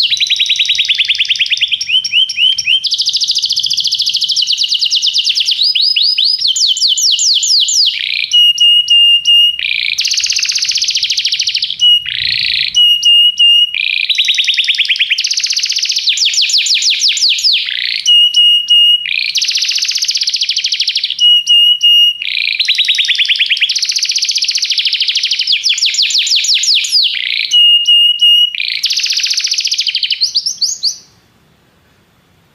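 Domestic canary singing loudly, in a continuous song of fast trills: runs of many rapid repeated notes, broken now and then by short, steady, whistled notes.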